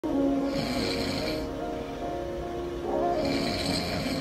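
A man snoring, two long snores about three seconds apart, over background music.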